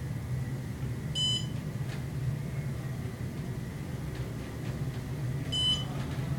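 Otis hydraulic elevator car travelling down with a steady low hum, and two short, high electronic beeps, one about a second in and one near the end, as the car passes floors.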